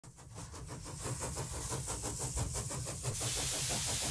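A steam engine running with a fast, even exhaust beat, fading in. A steady hiss of steam joins about three seconds in.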